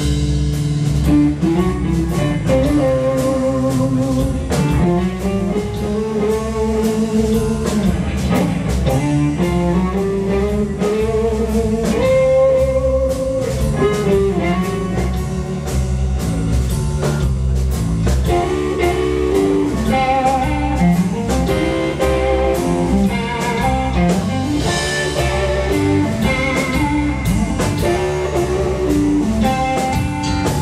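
Live blues-rock trio playing an instrumental passage: an electric guitar leads with long notes that bend and waver in pitch, over bass guitar and a drum kit.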